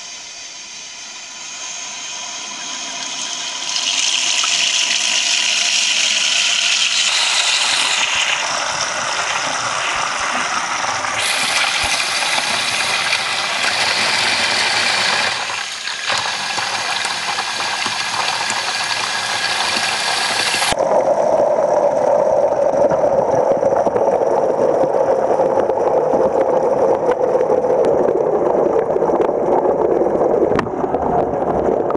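Water pouring and splashing into a stainless steel sink close to the microphone, a hiss that grows loud over the first few seconds and shifts abruptly in tone several times. About twenty seconds in it turns to a duller, muffled rush, heard from under the water's surface.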